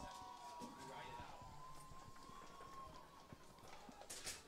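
Faint, distant voices of people at an outdoor soccer field picked up by the broadcast microphone, with a thin steady tone that fades out about three seconds in and a few light taps.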